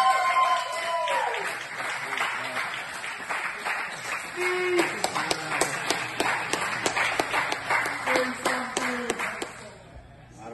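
A small group clapping and cheering: a long shout from several voices at the start, then steady clapping with a few short shouts among the claps.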